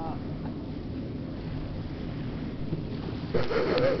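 Low, steady rumble of wind buffeting the microphone. Laughter and voices break in near the end.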